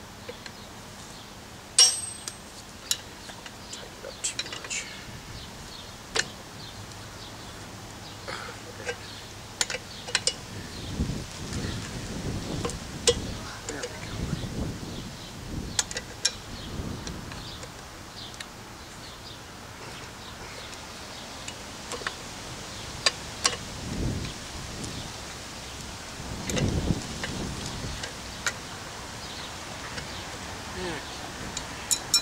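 A wrench on the flywheel nut of a Maytag Model 92 engine, working the nut to line up its cotter-key hole: scattered sharp metal clicks and clinks, a few seconds apart.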